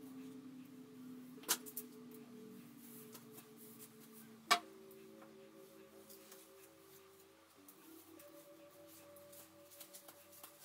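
Faint, soft background music of sustained held notes that shift to new pitches a few times. Two sharp clicks cut through it, about one and a half seconds in and, louder, about four and a half seconds in.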